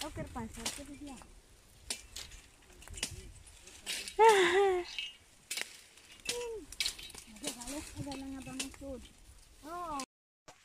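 Indistinct women's voices talking at a distance, one louder call about four seconds in, with scattered sharp cracks and clicks of dry sticks being snapped and pulled loose while gathering firewood.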